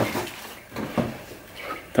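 A few light knocks and rustles from handling sneaker packaging while a pair of new shoes is taken out.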